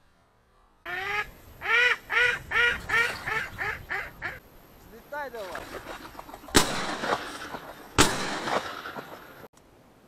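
Mallard quacking in a quick run of about ten calls, then a few softer calls, followed by two loud shotgun shots about a second and a half apart.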